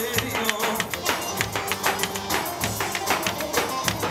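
Halay dance music played by a wedding band: a fast, steady drumbeat under a held melody line.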